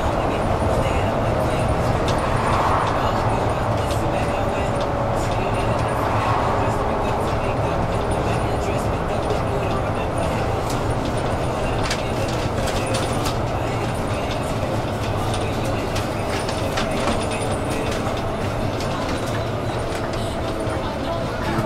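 City bus cabin while the bus is driving: steady engine hum and road noise, with scattered small clicks and rattles from the bus's fittings.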